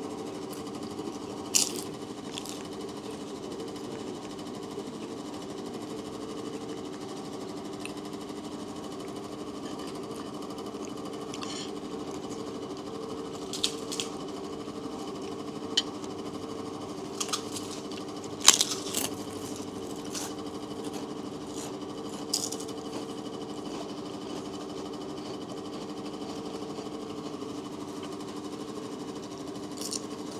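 A steady mechanical hum under a handful of sharp clinks of spoons against plates during a meal. The loudest clink comes about eighteen seconds in.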